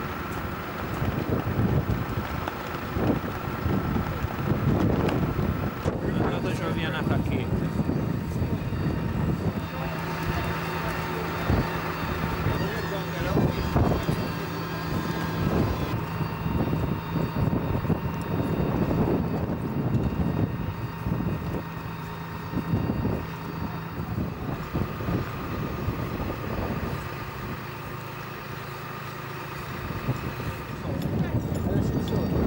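Steady flight-deck machinery noise: a constant whine over a low rumble, its tones shifting slightly about six seconds in, with wind buffeting the microphone and indistinct voices in the background.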